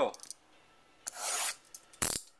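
Plastic shrink wrap on a trading-card box crinkling under the fingers: a half-second rub about a second in, then a few light ticks.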